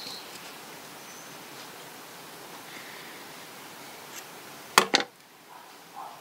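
Scissors snipping crochet yarn: a quick double snip near the end, after a stretch of low steady hiss.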